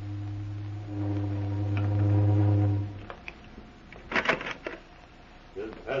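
A deep, steady horn-like tone held for about three seconds. It grows louder about a second in, then cuts off. A few short sharp sounds follow about four seconds in.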